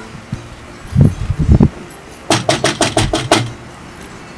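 Knocking on a house's front door: a few dull thumps about a second in, then a quick, even run of about eight sharp raps.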